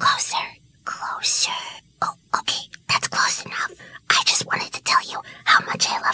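A voice whispering in short phrases, with brief gaps between them.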